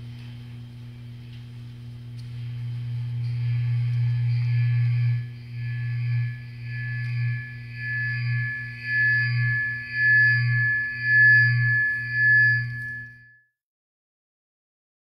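Steady electronic tones over a low hum through a sound system, swelling and then pulsing about once a second, cut off suddenly near the end.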